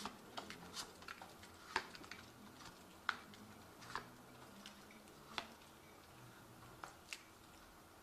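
Faint, scattered clicks and taps of a tarot deck being handled and cards laid out, about eight short clicks spread irregularly over several seconds.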